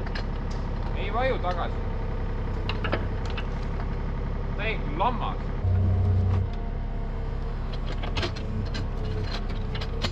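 Yanmar mini excavator's diesel engine running steadily with its hydraulics working as the bucket pushes and lifts a rotten log; the engine loads up and deepens for about a second around six seconds in. Two short squeaky glides, about one second and five seconds in.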